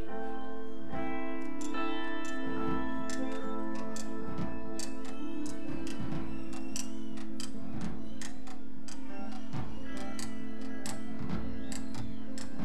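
Live cumbia band playing an instrumental passage: long held chords over a quick ticking percussion beat.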